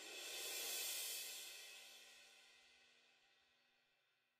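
Sampled orchestral cymbal from the EastWest Quantum Leap Symphonic Orchestra library, a quiet swell that peaks about a second in and then rings away, fading out.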